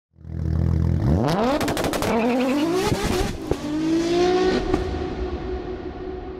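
Car engine idling briefly, then accelerating hard with rising revs through two gear changes, with sharp cracks and pops along the way, settling into a held note that fades near the end.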